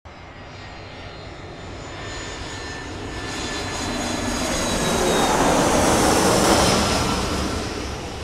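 Jet aircraft flying past: engine noise with a faint high turbine whine builds to a peak about six seconds in, then fades away.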